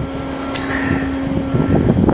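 Steady hum of ship's machinery on a tanker deck, with wind rumble on the microphone; the hum cuts off just before the end, and a single short click comes about half a second in.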